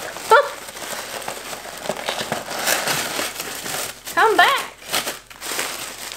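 Brown honeycomb kraft paper packing wrap crinkling and rustling as it is pressed and tucked by hand around a package inside a cardboard shipping box.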